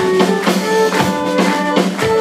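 Live folk-rock band playing an instrumental passage: fiddle and melodeon carrying the tune over cello, bass guitar and a drum kit keeping a steady beat.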